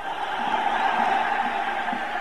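Audience applauding, a dense steady wash that swells in the first second and then slowly eases off.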